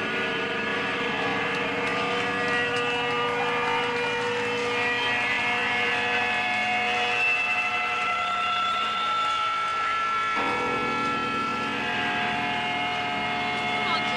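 A sustained drone of several held pitches with no beat, its tones shifting about ten seconds in, heard between songs on a live punk recording.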